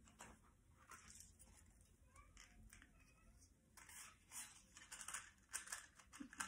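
Faint rustling and light clicks of small objects being handled, busier in the second half: a small cardboard matchbox being picked up and slid open.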